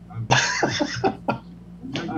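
A man's loud, breathy burst of laughter lasting about a second, in quick repeated pulses.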